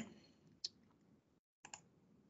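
Near silence with a few faint, short clicks at a computer: one about two-thirds of a second in and a quick pair just before the end.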